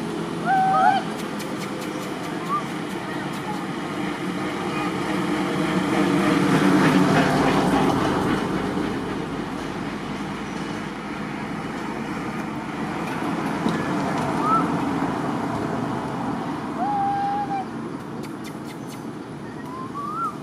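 A motor vehicle passing, its engine and road noise swelling to a peak near the middle and slowly fading. A few short high-pitched animal calls sound over it, one about a second in, one near the middle and a held call near the end.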